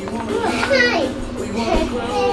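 A young child's voice over the sound of a children's TV programme, with a high-pitched squeal that rises and falls about a second in.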